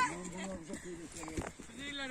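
Faint voices murmuring in the background, with a single soft knock about one and a half seconds in.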